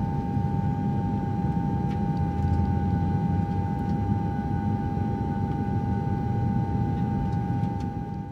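A steady low rumbling drone with a single held tone above it, laid over the pictures as a sound bed, starting to fade out at the very end.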